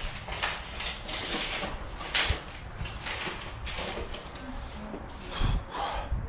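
Irregular knocks, clicks and clatter of handling in a workshop, with a louder dull thump about five and a half seconds in.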